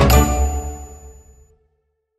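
Background music stopping with a bright, high ding that rings out and fades to silence within about a second and a half.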